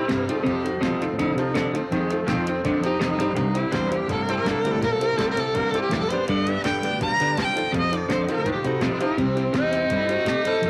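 Fiddle solo in an up-tempo rock and roll number: quick bowed fiddle lines over the full band and a fast, steady drum beat.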